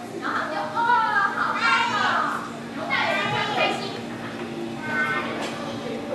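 Young children's voices chattering and calling out together, over a steady low hum.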